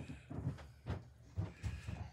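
Hands handling computer parts on a desk: several soft, irregular knocks and rustles, about six in two seconds, as a zip tie is fitted around cables on a motherboard.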